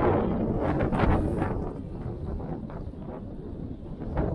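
Wind on the microphone over the hum of street traffic, strongest in the first second and a half and then easing.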